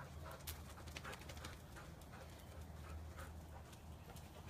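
A dog moving about, faint, with light irregular ticks of its steps over a steady low hum.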